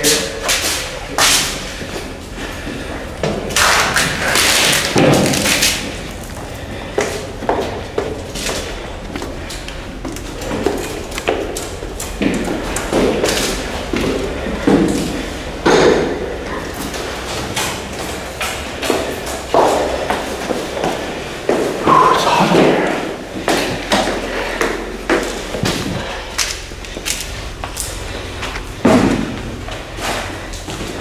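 A run of irregular thumps and knocks, with some indistinct voices, echoing in a large room.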